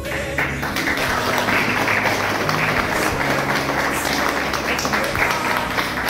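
An audience applauding, starting about half a second in and easing near the end, over background music.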